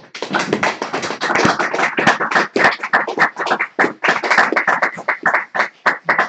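Audience applauding. The applause starts suddenly, and the separate hand claps stay distinct rather than blending into a wash, as from a small group.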